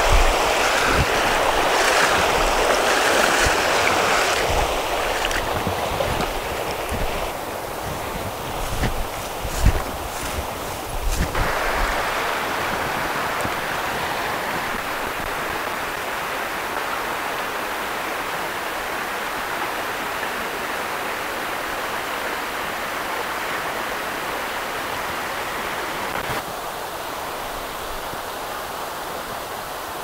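Steady rush of water over a shallow trout-stream riffle, with waders sloshing through the current at the start. A few short knocks come about a third of the way in.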